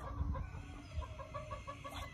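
Chickens clucking faintly, with a quick, even run of short clucks starting about a second in.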